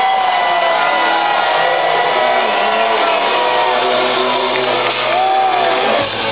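Hard rock band playing live at full volume, heard from the crowd: dense guitar-driven music with long, gently bending held notes, and shouts from the audience.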